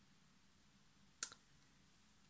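Near silence: room tone, broken by one short, sharp click a little over a second in.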